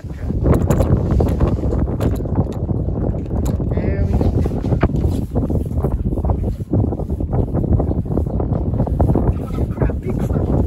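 Strong wind buffeting the microphone: a loud, gusting rumble. A few faint clicks and a brief voice break through about four seconds in.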